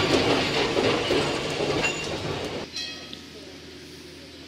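Historic wooden-bodied Amsterdam tramcar rolling past close by, its wheels running on the rails with a few clicks, the sound fading as it moves away. About two and a half seconds in it cuts off abruptly to a quieter background.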